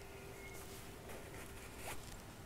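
Faint rasp of sewing thread being pulled through a stuffed fabric heart as the hand stitching is drawn tight, with the fabric rustling in the hands.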